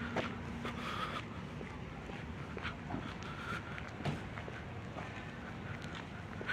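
Quiet outdoor street background with faint, irregular footsteps of someone walking on pavement, and a few short faint sounds in the distance.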